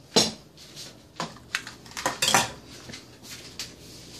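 Kitchen dishes and utensils clattering on a countertop: a series of sharp knocks and clinks, the loudest about a quarter second in and a quick cluster around two seconds.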